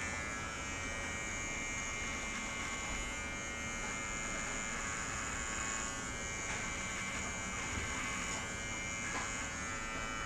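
Electric hair clippers buzzing steadily while trimming stubble on the neck and jaw.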